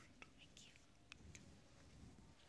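Near silence in a large room, with faint, distant speech: a few soft hissing consonants carry, too low for words to be made out.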